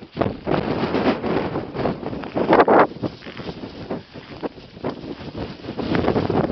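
Gale-force wind buffeting the microphone in uneven gusts.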